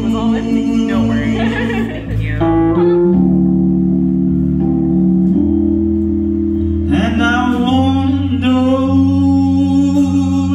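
A man's voice singing a slow song over electric keyboard chords. Partway through, the voice drops out and the keyboard holds chords alone for a few seconds, then the singing comes back.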